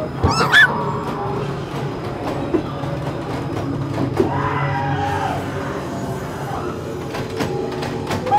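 Haunted-maze soundtrack: dark ambient music over a steady low rumble. A short shrill cry rises sharply about half a second in.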